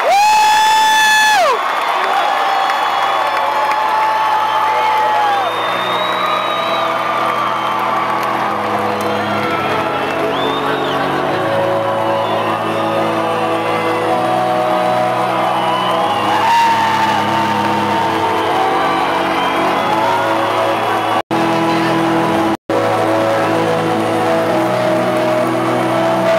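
Arena crowd cheering and whooping, with one loud high whoop at the very start that falls away after about a second and a half, over music from the PA made of slow held chords that change every second or so. The sound cuts out briefly twice near the end.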